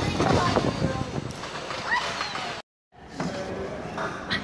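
Background voices and general noise in a large indoor play hall, broken by a brief dead silence about two and a half seconds in.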